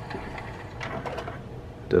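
Sony CDP-CE375 five-disc changer's carousel motor and plastic gears whirring steadily as the disc tray rotates to the next disc.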